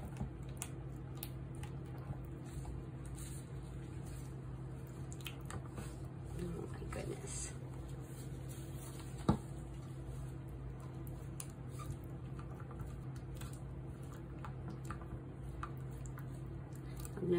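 Silicone spatula stirring very thick cold process soap batter in plastic pour cups: faint squishing and scraping with light taps on the cup, and one sharp tap about nine seconds in, over a steady low hum.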